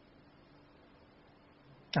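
Near silence: room tone with a faint steady hum. A man's voice cuts in sharply at the very end.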